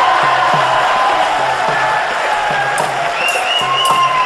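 Live dance music driven by a dhol drum beat, with a crowd cheering over it.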